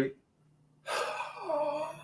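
Under a second of dead silence, then a man's audible breath in and a soft, wordless voiced sound that dips and rises in pitch, like a hesitant 'hmm' before speaking.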